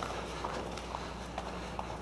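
Faint soft taps of bare feet on foam mats as a karateka bounces and turns through a spin kick, a few scattered footfalls over a low steady hum.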